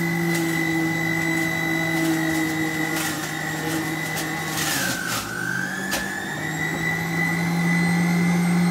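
SilverCrest 800-watt centrifugal juicer's motor running with a steady high whine. About five seconds in its pitch dips and then climbs back as fruit is pushed down onto the spinning grater disc, with a few short clicks.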